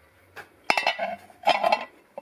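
Cast-metal motorcycle primary chain cover set down onto a turned aluminium ring on a milling-machine table: two sharp metallic clinks that ring briefly, about a second apart.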